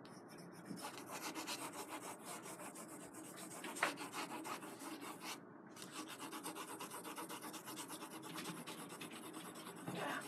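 AnB Eagle drawing pencil shading on drawing paper: fast, faint, scratchy back-and-forth strokes building up the bark texture, with one harder stroke about four seconds in and a brief pause shortly after.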